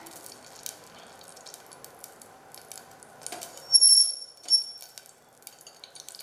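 Faint crackling and ticking from a stainless steel pressure-cooker pan heating on the stove with a little liquid in it. A sharp, high squeak sounds twice a little past the middle and is the loudest thing heard.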